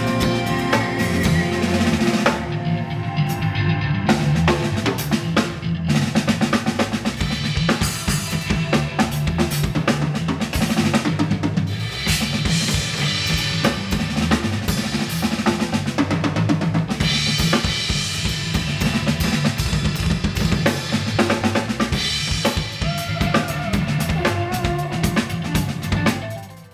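Yamaha acoustic drum kit played live and busily, with bass drum, snare and cymbals, going into a drum solo in 19/8 time about halfway through.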